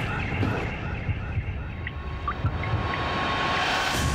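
A low, rumbling drone of dramatic trailer soundtrack, with a faint steady high tone entering about halfway through.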